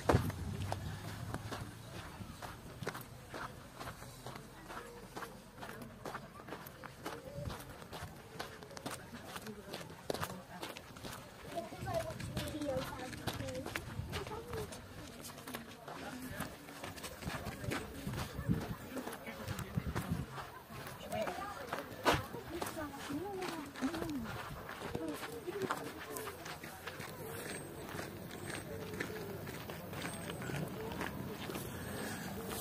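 Footsteps on a gravel path, a steady run of short steps, with faint voices of other walkers in the background now and then.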